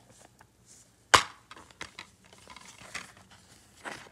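A plastic DVD case being opened: one sharp, loud snap about a second in, then softer taps and rattles as the case is handled.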